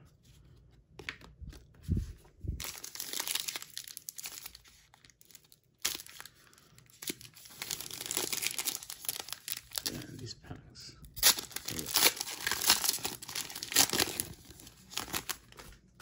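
A trading-card pack wrapper being crinkled and torn open by hand: quiet at first, then crackly rustling from a few seconds in, a short pause, and the loudest crinkling in the second half.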